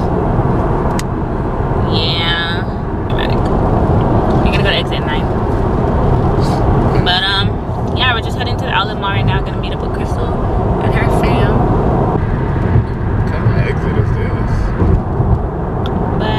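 Steady road and engine noise of a moving car heard inside the cabin, with a woman talking over it on and off.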